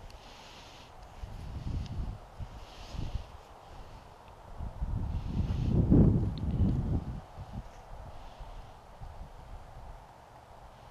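Rustling of clothing and handling bumps close to the microphone as the angler shifts and reaches out, with a low rumble that is loudest about six seconds in.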